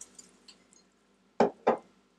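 Last faint drips of water into a pot, then two sharp knocks about a third of a second apart as a drinking glass is set down on a hard surface.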